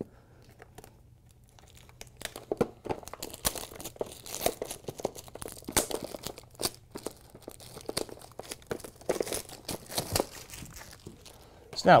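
Packaging being unwrapped by hand: a quiet start, then from about two seconds in a dense run of irregular crinkling, crackling and tearing sounds.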